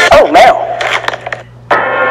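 A short, loud cry with a bending pitch, then a brief lull, then music starting suddenly near the end.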